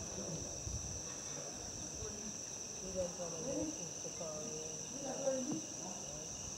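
Night insects, likely crickets, keeping up a steady high-pitched chirring chorus.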